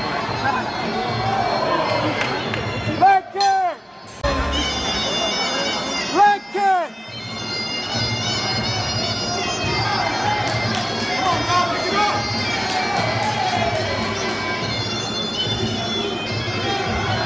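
Muay Thai fight music: a Thai oboe (pi java) playing a held, reedy melody over crowd noise, with two brief loud bursts about three and six seconds in.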